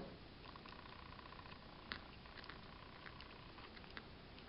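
Near silence with a few light clicks of a knitting needle against the metal pins of a spool knitter (tricotin) as loops are worked, the clearest about two seconds in, over a faint steady high hum and hiss.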